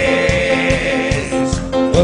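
A live cuarteto band plays between sung lines: accordion and keyboards over bass and percussion.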